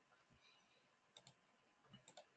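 Near silence: room tone, with two faint, quick clicks close together about a second in.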